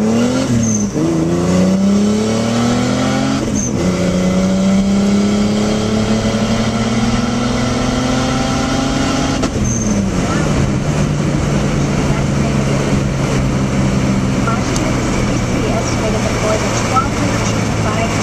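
Turbocharged BMW E30's M20 straight-six (2.7 bottom end, 2.5 head, Garrett turbo on 7 psi) accelerating hard through the gears, heard from inside the cabin. The revs climb with brief dips at gear changes about one and four seconds in, then rise in one long pull. Near the ten-second mark the revs fall away as the throttle is lifted, and the engine then runs at steady, lower revs.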